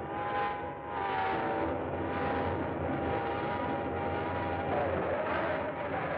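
Film sound effect of a sound-ray device's loudspeaker horns: a steady high whine that wavers near the end, over a rushing roar that swells about once a second.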